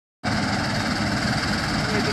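Heavy diesel farm machinery running steadily, a constant loud drone with a noisy hiss over it, cutting in abruptly just after the start.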